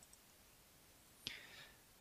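Near silence, then a faint mouth click and a short breath just past the middle, as the narrator draws breath before speaking.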